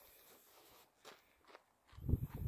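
Near silence with a few faint footsteps on a gravel road.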